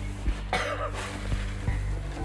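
A man coughs once, briefly, about half a second in, over a steady background music bed.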